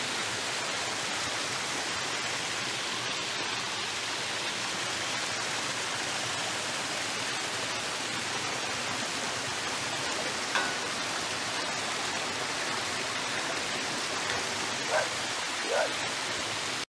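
Water pouring in several streams from spouts and pipes down a rock face, a steady splashing rush. A few short chirps come through it about ten seconds in and near the end.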